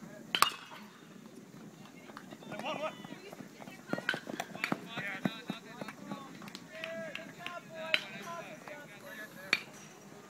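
Voices of players and spectators calling out across a baseball field, with a sharp crack about half a second in, typical of a bat hitting the ball. A few more sharp knocks follow later.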